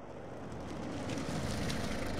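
A car driving up, its engine and tyre noise growing steadily louder as it approaches.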